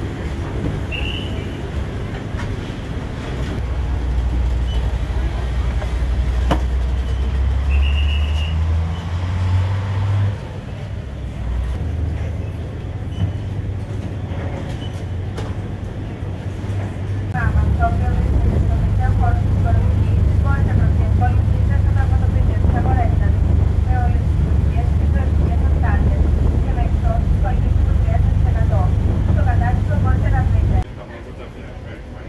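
Steady low rumble of the Santorini Palace high-speed ferry's engines, with passengers' voices faintly over it. About seventeen seconds in it turns louder and fuller: the ship under way at speed, its engine drone mixed with the rush of its wake.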